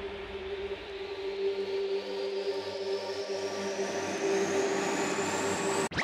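Beatless breakdown in an electronic dance mix: a held synth drone under a slowly rising whoosh that builds gradually louder, with the kick-drum beat cutting back in at the very end.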